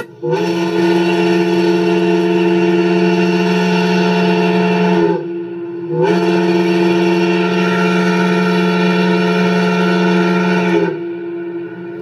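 Montana State University factory whistle blowing two long blasts of about five seconds each, a short break between them. Each blast is several steady tones sounding together, sliding up briefly as it comes on.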